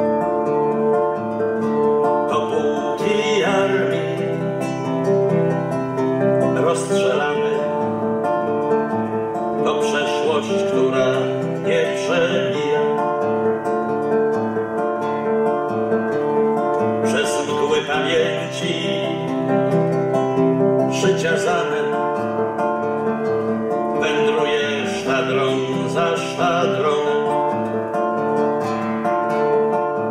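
Nylon-string classical guitar played fingerstyle, with a man singing a ballad over it in phrases.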